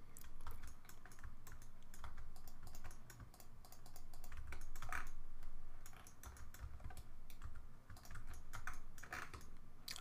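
Computer keyboard keys clicking in irregular runs, as in typing or pressing shortcuts.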